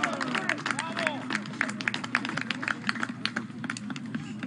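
Scattered hand clapping from a small group of spectators, irregular claps several a second, with a couple of short calls from voices in the first second.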